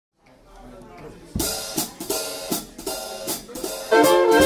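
Big-band drum kit playing the intro to a swing dance number. Several sharp snare and cymbal strokes come at uneven spacing from about a second and a half in, over faint room sound.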